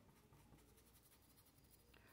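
Near silence, with faint strokes of a stiff paintbrush on cloth.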